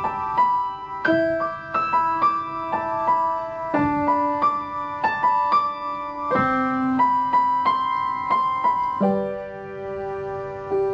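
Piano music: a melody of single struck notes, several a second, over lower notes that change every couple of seconds.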